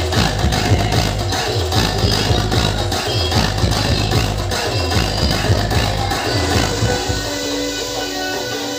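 Loud electronic DJ music with a heavy, pounding bass beat played over a large truck-mounted DJ sound system. About seven seconds in, the bass drops out and the music thins.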